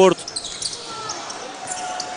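A basketball bouncing on the court, over the even background noise of an indoor arena crowd.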